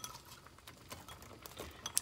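Faint, scattered clicks and taps of a metal spoon against the pot as sliced red onion is spread over curry chicken.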